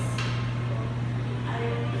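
Mitsubishi Heavy Industries floor-standing air conditioner running with a steady low hum. A brief rustle of a plastic-wrapped tissue pack comes just after the start.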